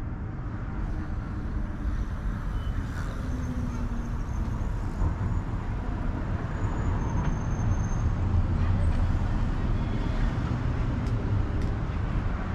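Street traffic: a steady low rumble of passing cars, swelling as a vehicle goes by about eight seconds in.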